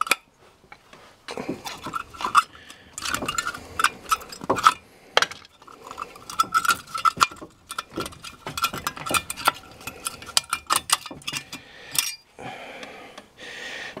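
Worn brake pad being pried and worked out of a front disc-brake caliper bracket: an irregular string of metal clicks, clinks and scrapes that goes quiet about a second before the end.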